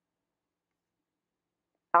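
Dead silence, as from a cut in the recording, until a woman's voice starts right at the end.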